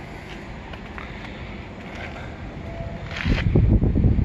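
Steady outdoor background hiss, then wind buffeting the phone's microphone from about three seconds in as an irregular low rumble.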